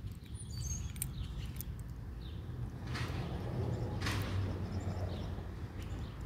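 Outdoor ambience: a steady low hum with faint bird chirps, and two short sharp clicks about three and four seconds in.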